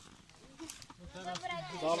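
A man blowing into a smouldering tinder bundle of dried moss to fan a bow-drill ember into flame, faint at first, with people's voices coming in about a second in.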